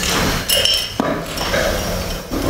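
Wine glasses clinking, with a few light knocks about half a second apart, one followed by a brief high ring, over steady room noise.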